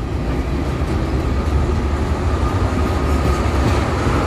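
Freight train tank cars rolling past close by: a steady, loud rumble of steel wheels on rail. A faint high tone comes in about halfway through.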